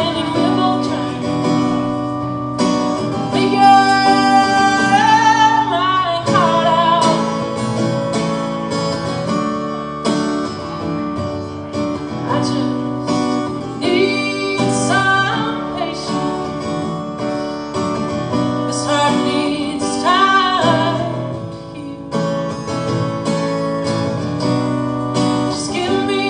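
A woman singing a slow song to her own acoustic guitar, played live. Her voice comes and goes in long held, wavering notes over steady guitar chords.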